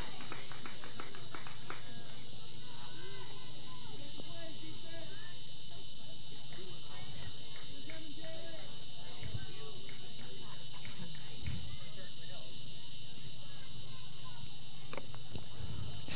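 Softball field ambience: distant voices of players and spectators calling out, with a few light taps near the start, over a steady high-pitched hum.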